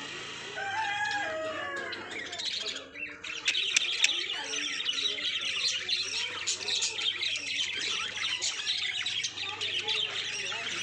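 Several budgerigars chattering and chirping, a busy stream of short high calls that grows denser and louder about three seconds in.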